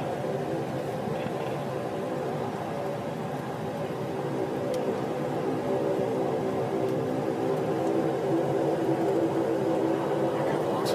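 Steady engine and road drone heard from inside a moving car's cabin, growing slightly louder toward the end.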